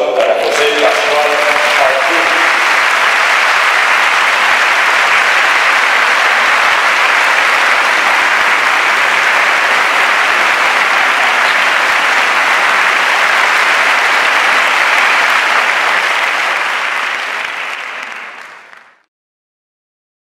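Choir and audience applauding steadily, fading out near the end.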